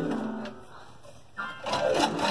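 A person's voice singing wordless notes: a held note tails off, then after a short lull another note starts and slides down in pitch near the end.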